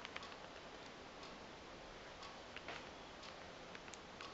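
Quiet room tone with a steady faint hiss, broken by a few light, faint clicks at irregular intervals.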